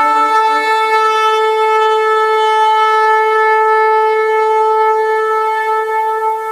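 A shofar, a ram's horn, sounding one long, steady blast.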